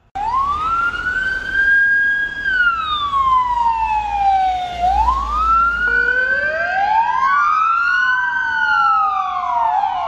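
Emergency-vehicle sirens wailing, slowly rising and falling in pitch. One siren sounds at first, and about six seconds in a second wail joins, out of step with it.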